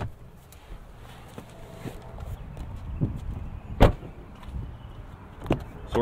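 Pickup truck doors: one solid door thump about four seconds in, the loudest sound, then a second, lighter knock about a second and a half later, over a low rumble of handling noise.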